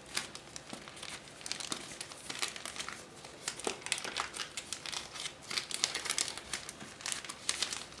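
Plastic zip-lock bag crinkling and rustling in the hands as decal sheets are worked out of it: a dense, irregular run of small crackles.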